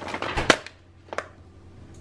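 Plastic food pouch crinkling as it is handled and laid on a granite countertop, with a sharp smack about half a second in and a lighter tap just after a second.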